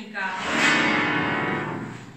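A woman's voice singing one long held note that fades out near the end, in a folk-ensemble performance.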